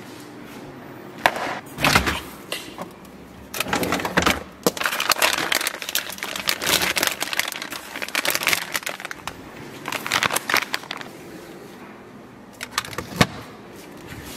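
Food packages being handled and taken out of a refrigerator: plastic bags crinkling, with irregular clicks and knocks of boxes and containers.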